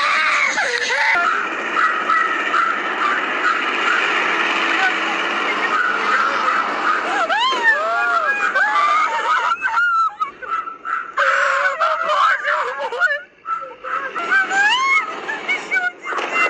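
People shouting and screaming in alarm, high excited voices without clear words, rising and falling over a steady background noise.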